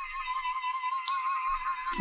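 MYNT3D 3D printing pen's filament feed motor running at sped-up speed, a steady high whine that wavers slightly, as it drives PLA filament through to the heated nozzle. A single light click about a second in.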